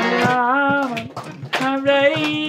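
A man singing a devotional kirtan chant into a microphone, his voice wavering in pitch, with a short break about a second in before the next line.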